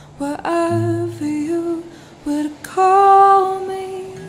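Music from a soft lofi acoustic song: a woman's voice singing slow, held notes over a low bass line, with the loudest held note about three seconds in.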